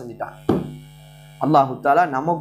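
A man lecturing, his voice breaking off for just under a second in the middle and then resuming. A faint steady low hum runs underneath and is heard on its own in the pause.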